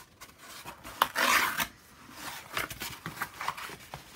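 Corrugated cardboard being handled and pressed by hand: a sharp crackling rasp about a second in, then softer rustling and scraping.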